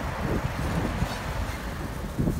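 Steady rushing noise of wind on the microphone, with a bicycle's tyres rolling on wet tarmac during a wheelie.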